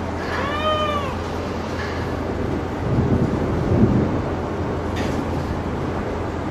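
Concrete and debris crumbling and falling from a demolished building wall, a loud rumble of rubble coming down about three seconds in, over the steady drone of the demolition crane's engine. Near the start a brief high squeal rises and falls in pitch.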